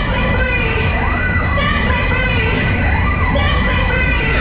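Riders on a fairground waltzer shouting and whooping, voices rising and falling, over a loud, constant low rumble.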